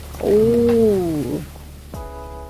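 A woman's drawn-out "ooh" exclamation, about a second long, its pitch rising a little and then falling away.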